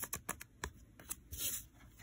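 Pokémon trading cards handled by hand against a table: a quick run of light clicks in the first half-second, then a soft brush of card stock about a second and a half in.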